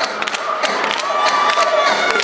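Spectators cheering and shouting, with sharp claps scattered through.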